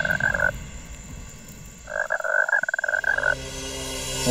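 A croaking animal call, a fast even rattle, trails off about half a second in and then sounds again for about a second and a half. The hunters take it for an unknown creature they call a swamp monkey.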